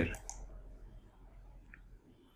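A faint computer mouse click as the Share button is clicked, over low room noise, just after the last spoken word ends.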